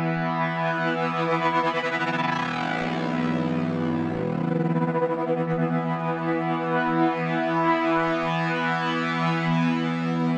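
Harmor synthesizer pad, played through the AeroPad Patcher preset, holding a sustained chord with tremolo applied so the sound pulses in and out.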